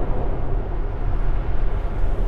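Steady road and tyre noise inside the cabin of a Tesla Model S, an electric car with no engine sound, cruising at about 120 km/h on a motorway.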